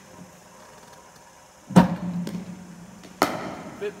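A cricket bowling machine delivers a ball with a loud thump followed by a short steady hum, and about a second and a half later the batter's bat strikes the ball with a sharp knock.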